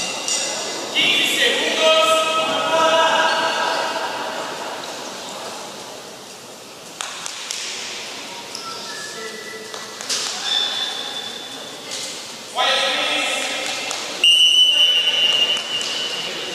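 Voices calling out in a large sports hall during a goalball match, with a few thuds. Near the end comes a long, steady whistle tone lasting about two seconds, typical of the referee's whistle restarting play.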